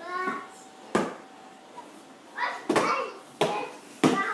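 A toddler's hands slapping the top of a cardboard box, several sharp thumps about a second apart, with the child's short wordless vocalizing in between.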